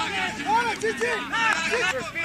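Several men's voices shouting short, overlapping calls of encouragement, repeated 'Πάμε!' ('Let's go!').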